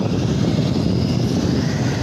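Wind buffeting a phone's microphone: a steady low rumble that rises and falls in level.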